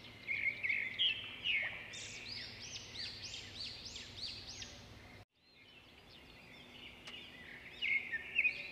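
Birds chirping: many short, repeated calls overlapping one another. The sound breaks off suddenly a little past five seconds in, then the chirping comes back fainter and grows louder near the end.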